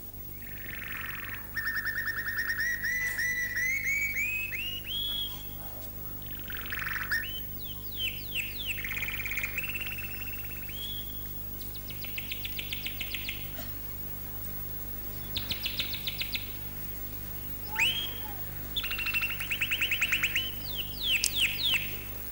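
A songbird singing a varied song: a rising run of whistled notes, fast trills and quick downward-sweeping whistles, in phrases with short gaps between them. A steady low hum runs underneath.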